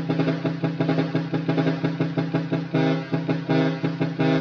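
Twin chrome trumpet horns driven by a Cicada multi-pattern horn relay, sounding in a fast chopped rhythm of short blasts. The pattern changes to longer, even pulses near three seconds in as the relay steps through its modes.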